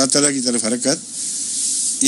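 A man speaking Urdu in a lecture, then a steady high hiss for most of the second half, cut off as he speaks again.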